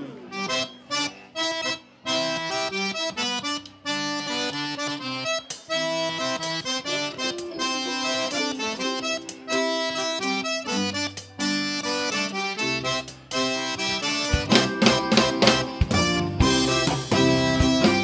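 Cajun single-row button accordion leading a dance tune in short, choppy chords. About fourteen seconds in, the electric bass and drum kit come in fully and the music gets louder.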